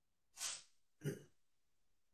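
A man clearing his throat: a short, sharp breath about half a second in, then a brief low throat-clearing cough about a second in.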